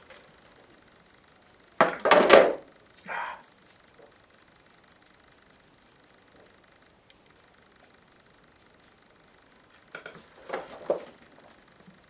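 Handling noises of a paint palette: a loud brief rustle and clatter about two seconds in as it is set down onto a plastic bag on the table, then more rustling and knocks near the end as it is picked up again, with a quiet room between.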